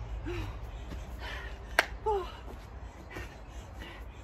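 A woman breathing hard mid-exercise, with short pitched grunting exhales and breathy puffs as she works through chest-to-floor burpees. A single sharp clap comes a little under two seconds in, as she jumps up at the top of a burpee.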